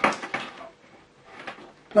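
A sharp plastic clack as a mains plug is pushed into a portable appliance tester, followed by a few lighter clicks of the plug and cord being handled.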